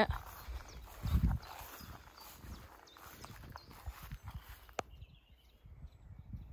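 Footsteps through long grass, uneven and soft, the heaviest a dull thump about a second in, with a single sharp click just before the end.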